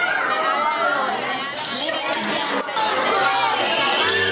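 Many young children chattering and calling out at once in a room, voices overlapping.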